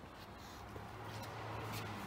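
Quiet room tone with a low, steady hum and a few faint rustles.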